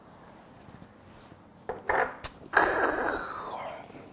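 A shot of soju being downed. A short throat sound comes just under two seconds in, then a small glass is set down on a wooden table with a sharp click. The loudest part is a breathy exhale of about a second after the shot.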